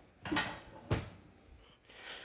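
Two short knocks a little over half a second apart, the second sharper, like a drawer or cupboard being handled in a small room.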